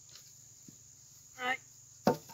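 Faint, steady, high-pitched chirring of insects in dry grass. About one and a half seconds in, a man lets out a brief strained "ai" as he heaves a heavy log section upright.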